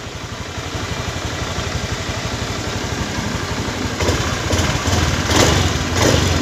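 Honda Beat FI scooter's single-cylinder four-stroke engine idling with a fast, even beat, running again now that its blown main fuse has been replaced. It swells louder twice, about four and five and a half seconds in.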